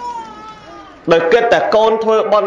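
A high, drawn-out cry lasting about a second and falling slightly in pitch, quieter than the talk, followed by a man speaking.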